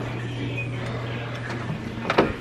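A steady low hum over faint room noise.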